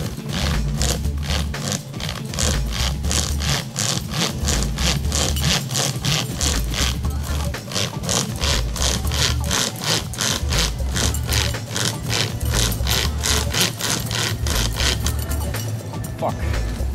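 Hand-pulled chain saw rasping back and forth through a wooden post in quick, even strokes, about three to four a second, stopping near the end. A funk backing track with a bass line plays underneath.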